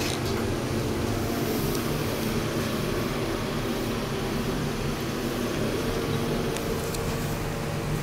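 Steady mechanical hum inside a Montgomery/KONE hydraulic elevator car as it travels down, with a faint added tone coming in near the end.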